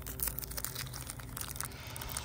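Foil card-pack wrappers and loose trading cards being handled: a continuous run of light crinkling and rustling crackles.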